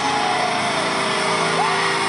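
Loud, steady roar of a large live-concert crowd with a sustained low drone from the stage, and a high cry that rises and falls near the end.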